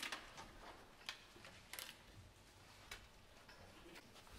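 Near silence in the church, broken by a handful of faint clicks and knocks as the musicians move about in the organ loft.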